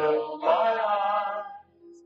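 Singing of a closing song: sustained sung notes in two phrases, with a short break near the end.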